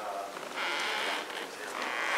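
Indistinct, faint speech from people away from the microphone, with a rustling, hissing noise in between.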